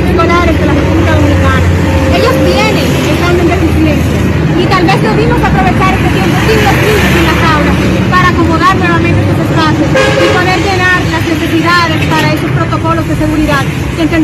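Street traffic with a vehicle engine running and a horn honking, under people talking, mostly one woman's voice close to the microphones.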